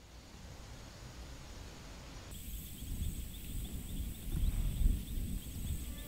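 Outdoor ambience: a low rumble like wind that grows louder, with faint insect chirping and a steady high insect tone starting about two seconds in.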